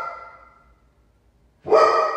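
A dog barking: one bark fades out over the first half-second, then after a short near-silent gap a new bark starts suddenly about 1.6 seconds in and rings on.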